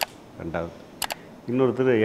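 Three sharp clicks: one at the start and a quick pair about a second in, in a pause between a man's words. His voice comes back near the end.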